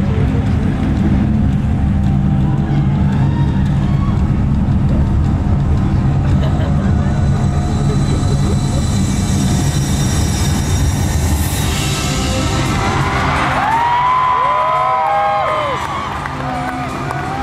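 Loud live concert music with heavy sustained low notes, played over the arena's sound system. In the last few seconds the crowd starts cheering and whooping over it.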